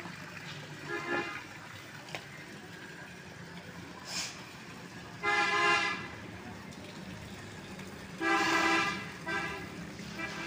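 A vehicle horn honking several times: a short toot about a second in, two longer blasts of under a second each midway and near the end, and a brief toot just after the last.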